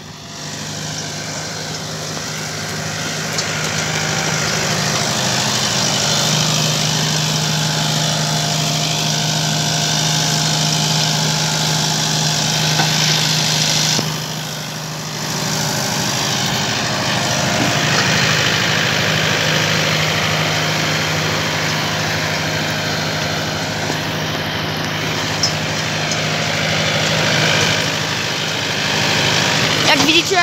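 Zetor Major CL 80 tractor's diesel engine running steadily under load while pulling a seed drill through dry soil. It grows louder over the first few seconds and dips briefly about halfway through.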